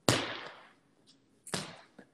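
Handling noise from a phone held close to the face: two sharp knocks about a second and a half apart, the first the louder, each trailing off over about half a second.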